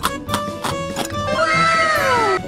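Upbeat background music with plucked notes. About a second and a half in, a high cartoon-character voice comes in over it, holds a long note, then slides down in pitch near the end.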